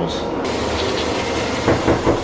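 Toothbrush scrubbing teeth: a steady hiss, then in the second half a quick run of back-and-forth brushing strokes, about five or six a second.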